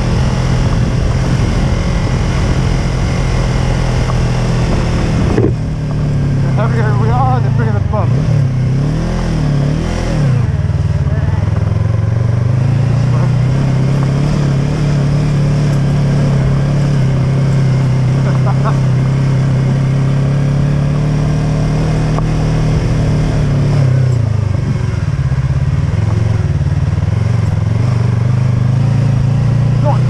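Yamaha YZF-R3 motorcycle's parallel-twin engine running steadily while riding on gravel. Its pitch dips and swings briefly about five seconds in, again around eight to ten seconds, and once more near the end, as the throttle is eased off and opened again.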